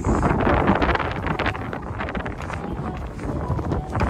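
Wind buffeting the microphone: a loud, rough rushing that surges in gusts, heaviest in the first second and easing a little after.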